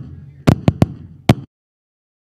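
A string of sharp, loud pops from the sound system at uneven spacing over a low rumble, then the audio cuts out completely to dead silence about one and a half seconds in.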